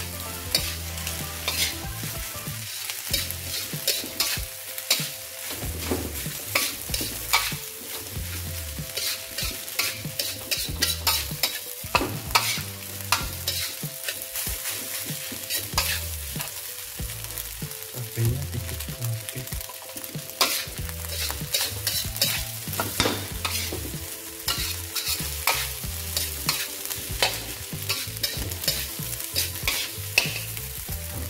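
A metal spatula scraping and clanking against a steel wok as fried rice is stirred and tossed, over a steady sizzle of frying. The scrapes and knocks come irregularly, about one or two a second.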